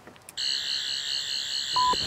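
Electronic buzzing sound effect: a loud, steady, high wavering tone that starts suddenly about a third of a second in, with a short pure beep near the end.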